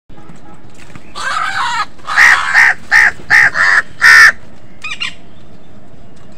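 House crows cawing: a longer harsh call about a second in, then six loud caws in quick succession, followed by a few softer calls near the end.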